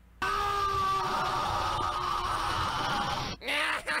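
A long, loud, raspy held vocal cry or groan from the cartoon's audio, lasting about three seconds with its pitch slowly sinking, followed by a short voice sound near the end.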